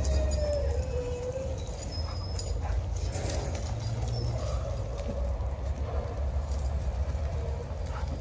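A dog whining in a thin, wavering tone that falls slightly over the first second and a half, then returns more faintly later on, over a steady low rumble on the microphone.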